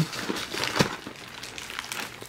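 Snack-packet wrappers crinkling and rustling as they are handled, with scattered small clicks.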